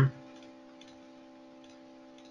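The end of a drawn-out 'uh', then a faint steady electrical hum with a few soft, faint clicks, as from a computer mouse clicking through software menus.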